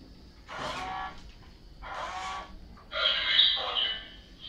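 Remote-control Iron Man toy robot playing electronic sound effects from its small built-in speaker: three short pitched bursts, the last the loudest.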